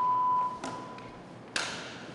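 A single high electronic beep from a mobile phone, sharp at the start and fading away over about a second, followed near the end by a short burst of hiss.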